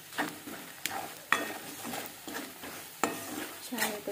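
Steel spoon stirring and scraping a thick spice-and-coconut masala around a metal pan over a light sizzle of frying, as the spice powders roast in oil. Several sharp clicks of the spoon against the pan stand out, the loudest in the first half.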